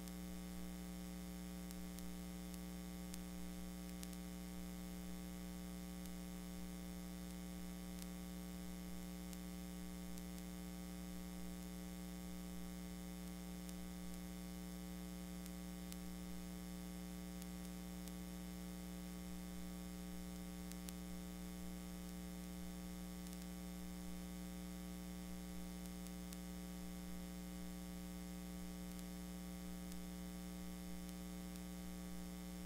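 Steady electrical mains hum with a faint static hiss and a few faint clicks, unchanging throughout: the background noise of a blank stretch of a videotape transfer.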